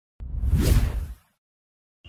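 A whoosh sound effect for an on-screen graphic transition, a single swelling sweep with a deep rumble underneath, lasting about a second.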